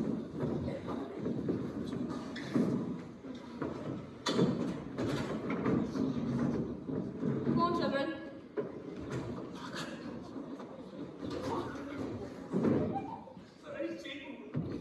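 A table and chairs being shifted and set down on a wooden stage: scattered knocks and thuds, with indistinct voices in a large hall.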